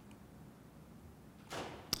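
Near silence of a quiet room, then near the end a short breathy hiss and a sharp mouth click as the lecturer draws breath before speaking again.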